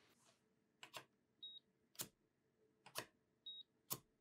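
Coating thickness gauge probe tapped down twice on a calibration foil over a steel reference block: each touchdown is a faint click, followed about half a second later by a short high beep from the gauge as it takes a reading, with a click as the probe lifts off in between.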